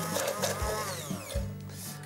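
Hand-held stick blender in a glass jar, puréeing onion, garlic, ginger and chilli into a paste. Its motor whine falls in pitch and fades as it slows down, over background music.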